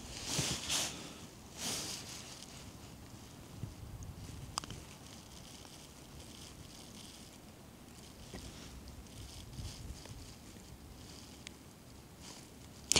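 Faint wind on an open mountain ridge, a low rumble, with a few brief rustles of a jacket in the first two seconds as binoculars are raised, and a single small click about four and a half seconds in.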